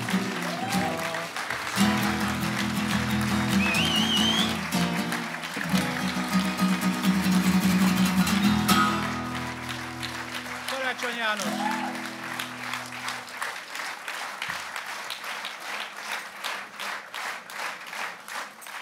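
Acoustic guitar strumming the closing chords of a song, ringing out and fading about thirteen seconds in, followed by audience applause.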